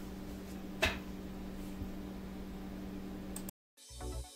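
A steady low hum over faint room noise, with one sharp click about a second in. Near the end the sound drops out for a moment and electronic dance music begins.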